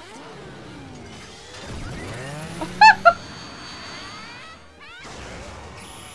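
TV action-show soundtrack with music and electronic transformation-belt sound effects: sweeping whooshes, two loud synthesized chimes about three seconds in, and more rising sweeps near the end.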